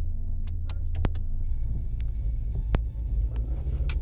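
Low, steady rumble of a Honda car driving, heard from inside the cabin, with a few sharp clicks about a second apart.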